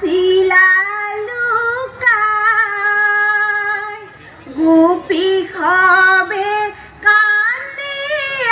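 Women singing Ayati Naam, an Assamese devotional chant, in long held, wavering phrases that pause about every two to three seconds. No drum is heard.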